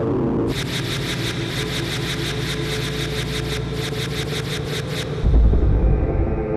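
Title-sequence music and sound design: a low rumble under a fast run of ticking pulses, ending in a deep boom about five seconds in.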